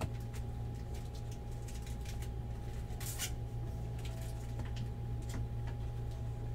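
Baseball trading cards being handled and sorted by hand: faint slides and soft clicks of card stock, with one brief rustle about three seconds in, over a steady low hum.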